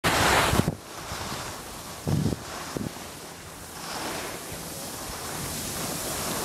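Wind buffeting the microphone and the hiss of skis sliding on packed snow while skiing downhill. A loud gust comes in the first moment, with a couple of low buffets about two seconds in.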